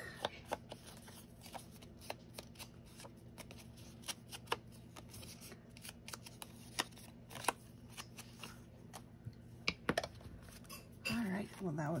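A card tag being handled and worked over with a foam ink blending tool: irregular soft taps and paper rustles, some closely bunched, others spaced out.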